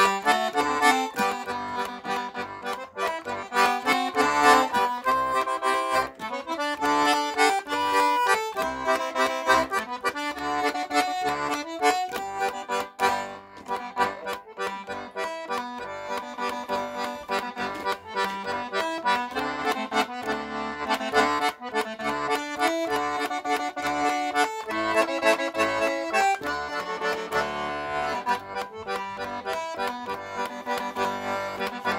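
Estonian lõõts, a diatonic button accordion, playing an old waltz: a reedy melody over regular bass-and-chord accompaniment.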